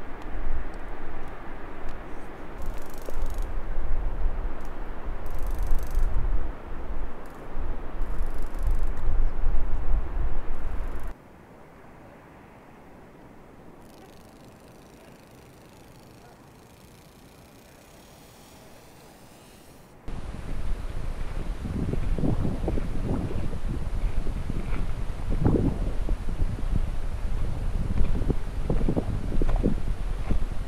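Wind buffeting the microphone, a loud low rumble that cuts off about eleven seconds in to a quiet outdoor hush. About nine seconds later the wind rumble comes back, with irregular low thumps in the second half.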